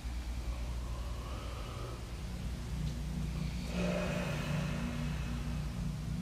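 A low steady hum, with a motor vehicle's engine noise swelling up about halfway through.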